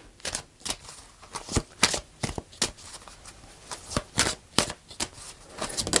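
A deck of oracle cards being shuffled by hand, split between two hands: a run of short, irregularly spaced card slaps and flicks.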